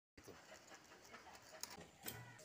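Near silence: faint rustling with a soft click about one and a half seconds in.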